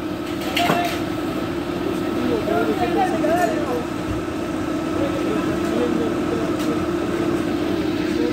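Fire engine's motor running with a steady drone, with distant voices calling faintly over it.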